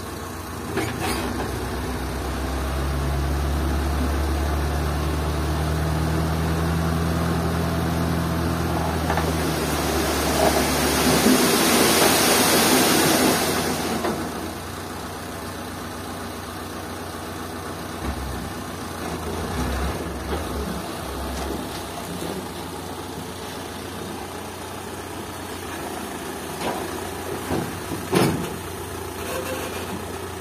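Old Toyota Dyna dump truck's engine held at raised, steady revs to drive the tipping hoist. About ten seconds in, a loud rushing hiss for some four seconds as the full load of fill slides out of the tipped bed. Then the engine idles, with a sharp clunk near the end as the bed comes back down.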